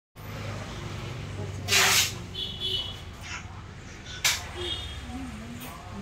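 Faint voices over a steady low hum. About two seconds in comes a short, loud hiss-like rush of noise, and a sharp click follows a couple of seconds later.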